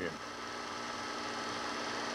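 Steady hum with a faint hiss, made of a few constant tones over an even noise floor: the background noise of an old recording.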